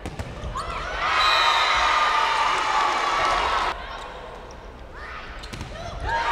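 A volleyball struck at the net just after the start, followed by loud shouting and cheering voices in a large gym that cut off abruptly about four seconds in. A second round of shouts and cheers starts near the end.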